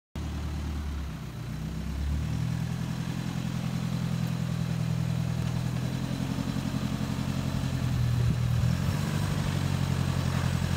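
Toyota Hilux 4x4's engine running at low revs, with a fine steady pulse, as the truck crawls over ruts in a dirt gully; its pitch rises a little about two seconds in and it grows slightly louder as the truck comes closer.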